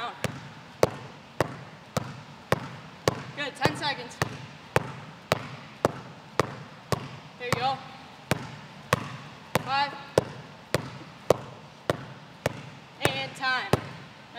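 Basketball dribbled continuously between the legs at full speed, bouncing on the court floor in a steady rhythm of about two bounces a second.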